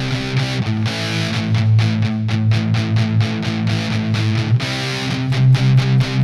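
Distorted electric guitar, a Fender Stratocaster through a Fender Mustang GTX amp on a metal preset, playing power chords with quick, evenly repeated pick strokes. The chord changes about a second in and again near the five-second mark.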